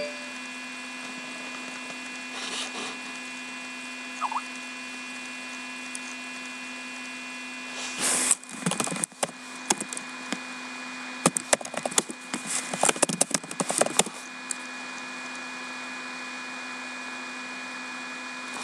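Steady low electrical hum. About eight seconds in comes a short rustle, then several seconds of irregular sharp clicks and knocks from handling things on a desk.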